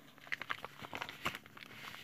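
Faint crinkling and light irregular clicks of clear plastic craft packaging being handled and picked up.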